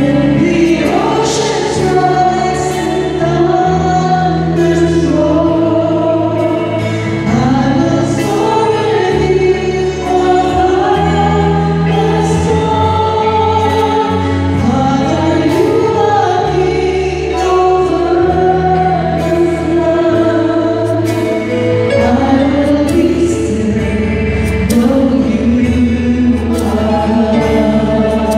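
A choir singing a slow Christian worship song over sustained accompaniment chords, the low note shifting every couple of seconds.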